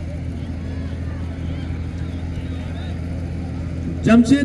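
A steady low hum with faint, distant voices over it, from the crowd around the ground.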